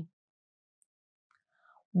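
Near silence in a pause between spoken phrases: the tail of a word at the very start, then dead quiet, and a faint in-breath just before a woman's voice resumes near the end.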